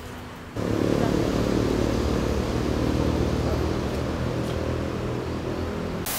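A low rumbling drone cuts in suddenly about half a second in and holds steady. At the very end comes a short burst of static noise.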